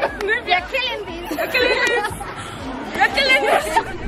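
A group of girls chattering together, voices overlapping in casual talk.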